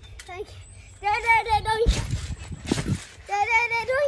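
A child's high-pitched voice calling out twice in drawn-out syllables, with two low thuds of feet on a trampoline mat between the calls.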